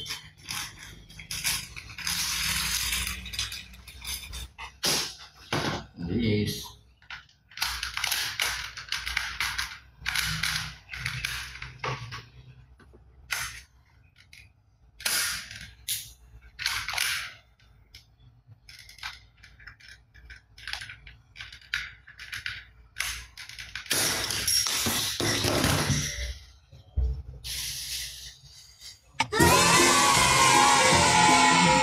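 Hard plastic toy guns being handled and a toy revolver fired at small plastic pin targets: irregular sharp clicks and clatters, with a few longer rattling stretches. Music comes in at the very end.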